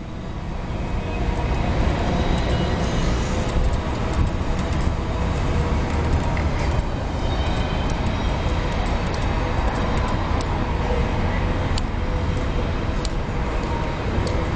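Steady low rumble of vehicle noise that builds up over the first two seconds, with a few faint clicks.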